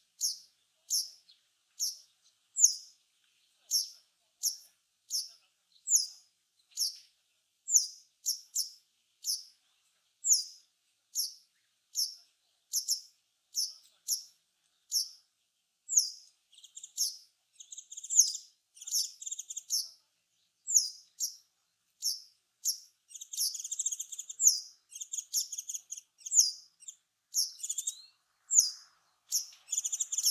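Male Japanese wagtail calling to a nearby female: short, high, clear calls about once a second. From about halfway in, denser twittering song phrases come between the calls.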